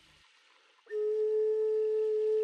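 Near silence, then a single steady pure tone starts suddenly about a second in and holds at one pitch, with faint higher overtones.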